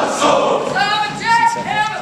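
A large group of soldiers singing together in a reverberant hall, with held, sustained notes.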